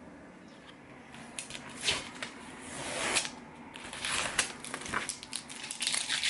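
Paper being handled: irregular crackling and rustling as a painted sheet is moved and lifted off a cutting mat, starting about a second in.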